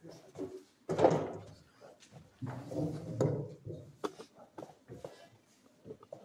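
Handling noise from stage equipment being set up: two louder stretches of rustling and clunking, about a second in and from about two and a half seconds, then a few short knocks.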